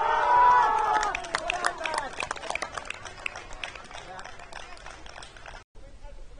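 A loud shouted call with a falling pitch, followed by a quick, irregular patter of running footsteps and knocks on the pitch. The sound drops out for a moment near the end.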